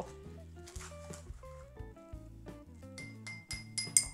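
Background music with a steady melody. About three seconds in, a metal teaspoon starts clinking quickly against a small drinking glass as it stirs cocoa and sugar, several sharp, ringing clinks a second.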